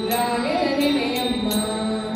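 Children singing a Kannada film song into microphones, one wavering melodic line over a steady drone, with a light percussive beat about twice a second.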